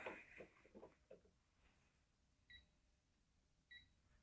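Near silence, with two faint short electronic beeps a little over a second apart from a digital torque adapter.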